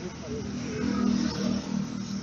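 Indistinct voices over a steady low engine hum that swells and then fades over about a second and a half, like a motor vehicle passing by.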